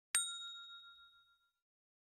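A single bell-like ding sound effect for a notification bell: one bright strike that rings out and fades away over about a second and a half.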